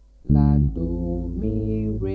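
Electric bass guitar, strung with old worn strings, playing a short line of plucked notes: one loud note starts about a quarter second in, then two more sustained notes follow at roughly even spacing.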